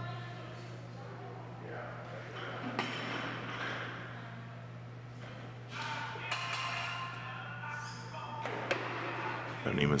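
Clean and jerk with a barbell loaded with bumper plates: two short clanks of bar and plates, one about three seconds in as the clean is caught and one near nine seconds as the bar is jerked overhead. A steady low hum runs underneath.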